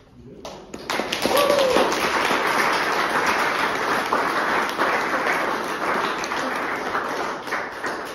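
Audience applauding: clapping starts about half a second in, holds at a steady level and dies away just after the end. A brief voice call rises over the clapping about a second and a half in.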